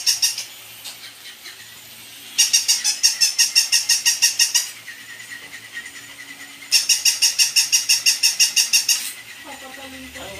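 Battery-powered plush toy animal playing its electronic sound: a rapid high-pitched chatter of about ten pulses a second, in bursts of a little over two seconds, twice, with pauses between.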